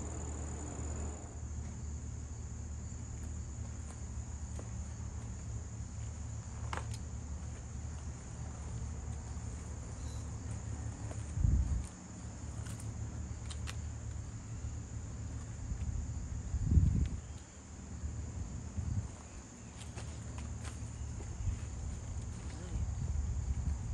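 Insects, such as crickets, chirring on one steady high note, over a low rumble. Two dull thumps come through, one a little past the middle and another about five seconds later.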